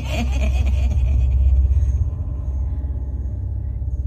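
Deep, steady rumbling drone of a horror sound effect. A ghostly cackling laugh fades out over the first second or so.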